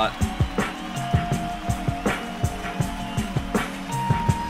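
Live band recording played back: a drum kit plays a steady groove of kick and snare hits under held keyboard tones, the opening of a song.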